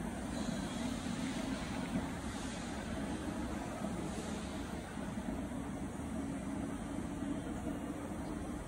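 Steady low mechanical hum of industrial machinery, with no distinct punching strokes or impacts.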